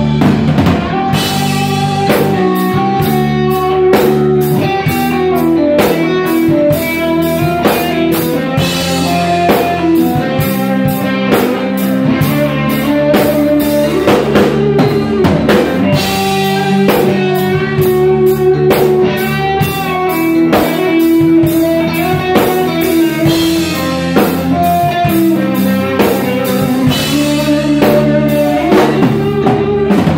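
Live rock band playing an instrumental passage: electric guitar, bass guitar and drum kit, with a steady driving beat of regular drum hits throughout.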